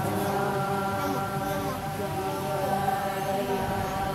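A group of voices chanting together in unison, on long held notes that bend in pitch now and then.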